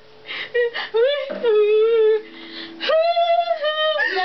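Girls' voices laughing in long, high held squeals while trying to sing, with a strummed acoustic guitar chord ringing underneath about a second and a half in.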